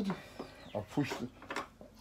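Faint clicks and taps of small metal brackets being pushed along the slot of an aluminium MFS guide rail, with a few mumbled words.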